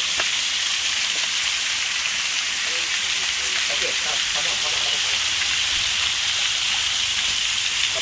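Shower spray of water falling steadily onto an elephant and the wet ground: a continuous, even hiss of pouring water.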